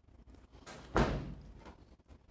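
A single dull thump about a second in, preceded by a brief swell of noise and dying away over about half a second.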